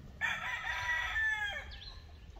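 A single long bird call, lasting about a second and a half and falling in pitch at the end.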